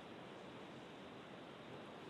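Near silence: a faint, steady hiss of background noise on the broadcast's audio line.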